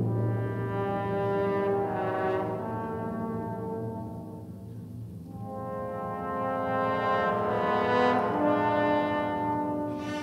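Orchestra playing slow, sustained brass chords in a 1954 studio recording. The sound thins out and quietens about halfway through, then swells again.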